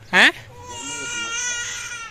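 A drawn-out crying wail, held at nearly one pitch for over a second, starting about half a second in, after a short spoken word.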